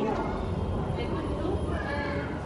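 Indistinct background voices over steady room noise in a large public hall.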